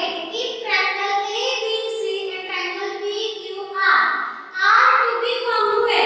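A high-pitched female voice in a sing-song delivery, holding long pitched notes, with a short break about four seconds in.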